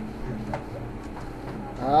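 A few faint computer-keyboard keystrokes over a steady low hum, then near the end a man's drawn-out spoken syllable with rising pitch.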